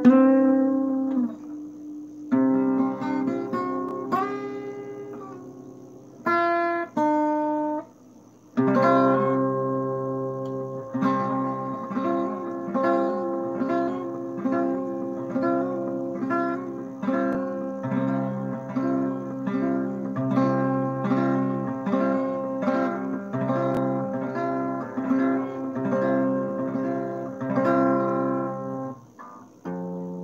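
Solo acoustic guitar playing a melody. A few picked phrases with short breaks come first, then from about eight seconds in a steady, even picking pattern, which stops just before the end.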